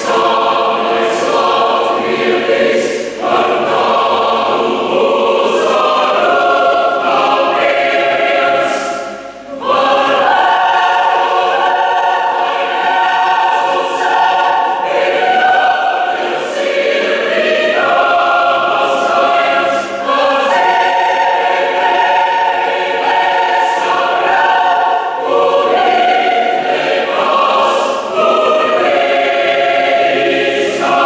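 Mixed choir of women's and men's voices singing in held, slowly changing chords, with sharp 's' consonants heard together now and then. About nine seconds in the sound briefly drops away, then a fuller, brighter phrase begins.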